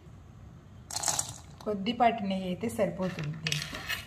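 Mostly a woman speaking, with two short hissing noises: one about a second in and one near the end.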